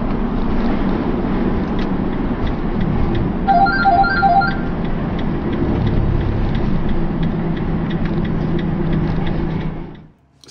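Van engine and road noise heard from inside the cab as the van slows on the motorway with its gearbox blown, having lost 5th and 6th gear. About three and a half seconds in, a short electronic chime sounds three times in quick succession.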